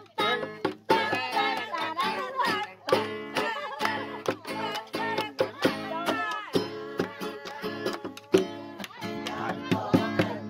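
Acoustic guitar strummed in a steady rhythm, with a man's voice singing along over it.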